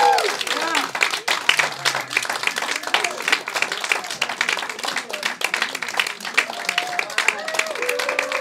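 Audience applauding after a story, a dense, steady patter of many hands clapping, with a few voices cheering at the start and again near the end.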